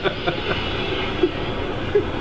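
Steady rushing of a fast stream, with a short laugh at the very start.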